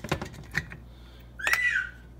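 Clicks and light taps of an olive oil bottle and its cap being worked one-handed. There is a louder click about a second and a half in, followed by a short squeak that rises and then falls.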